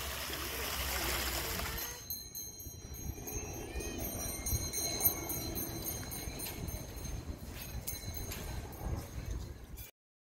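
Shallow water running over rocks in a small artificial stream for about two seconds, then a cut to quieter outdoor ambience with faint high tinkling tones and a few light ticks. The sound cuts off abruptly just before the end.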